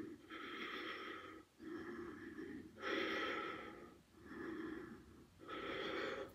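A woman breathing audibly with effort as she holds a core-strength yoga pose: about five long breaths, each lasting about a second, with short pauses between.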